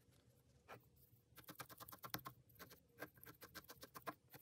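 Felting needle stabbing rapidly and repeatedly into core wool wrapped on a wire armature, a run of short soft ticks starting about a second and a half in.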